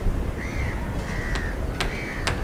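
A crow cawing twice, two short arching calls, over a steady low rumble, with a couple of sharp clicks near the end.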